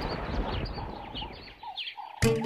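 A background music cue dying away, with a string of short high chirps, about four a second, running over it.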